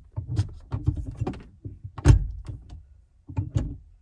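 Manual gearshift of a 1999–2000 Honda Civic Si (EM1), a newly fitted shifter with the console removed, being worked through the gears by hand. The lever and linkage make a series of clicks and clunks, the loudest about two seconds in.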